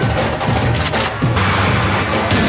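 Action-film soundtrack playing loudly: music under a series of crashing impacts that grow denser in the second half.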